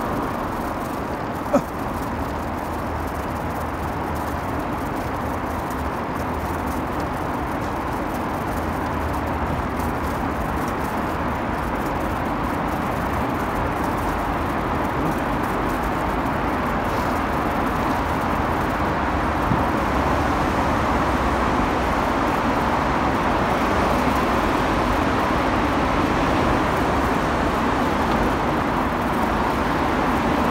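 Steady engine and road noise from a vehicle driving through a road tunnel, slowly growing a little louder, with one sharp click about one and a half seconds in.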